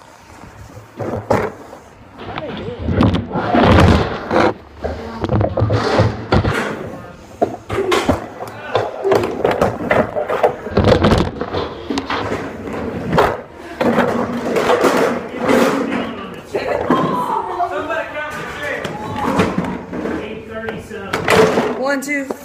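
Overlapping voices of kids talking, with repeated knocks and clatters of chairs being stacked.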